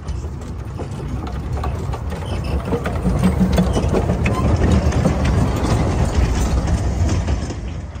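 Narrow-gauge steam locomotive and its carriages passing close by, the wheels and running gear rumbling and clanking on the rails. It grows louder from about three seconds in and falls away sharply near the end.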